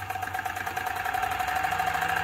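Wilesco D305 model steam engine running on compressed air and driving the jacked-up rear wheels through its chain: a rapid, even ticking of exhaust beats that speeds up and grows louder as more air is let in, with a steady whine over it.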